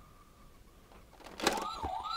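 Toy police van's electronic siren starting after a sharp click about a second and a half in, a fast up-and-down warble.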